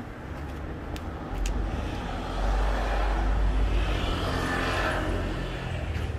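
A motor vehicle passing: a low rumble that swells from about two seconds in, peaks, and fades near the end.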